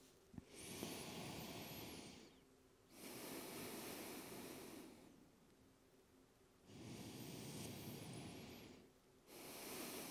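Slow, faint ujjayi breathing through the nose: four soft breaths of about two seconds each, inhales and exhales alternating, with short pauses between. A small tap comes just before the first breath.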